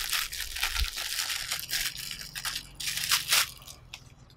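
Clear plastic packaging crinkling and crackling in irregular bursts as a small flexible tripod is pulled out of its bag. It is loudest a little after three seconds in.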